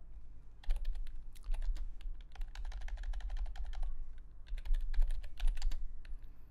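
Typing on a computer keyboard: two quick runs of keystrokes with a brief pause between them.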